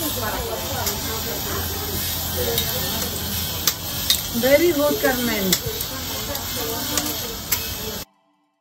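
Several people talking indistinctly over a steady hiss, with a few sharp clicks scattered through; the sound cuts off suddenly at the end.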